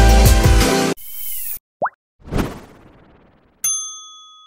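Background music that cuts off about a second in, followed by a channel logo sting: a swish, a short rising pop, a second swish that fades away, and a bright ding ringing on near the end.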